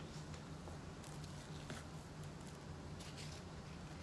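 Faint soft scraping, squishing and rustling as masa is spread onto dried corn husks with a spoon, with a few light clicks, over a low steady hum.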